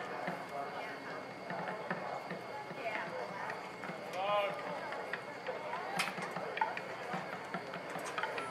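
Indistinct chatter of voices across an outdoor soccer field, with one voice calling out about four seconds in and a single sharp click about six seconds in.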